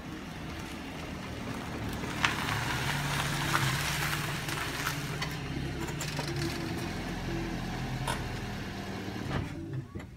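Small hatchback's engine running steadily at low revs, with a few sharp clicks along the way.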